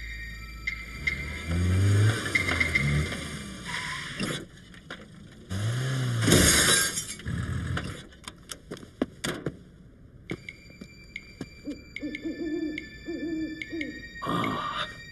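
Cartoon sound effects: a loud crunch about six seconds in as the Mini bumps the parked car in front, then a rapid clatter of small pieces falling off. Quieter near the end, an owl hoots in short repeated notes.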